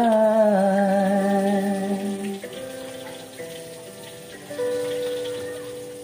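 A man holds the last sung note of the ballad with vibrato, its pitch easing down and settling before it ends about two and a half seconds in. The backing music's sustained chords carry on after it, with a new chord coming in near the end.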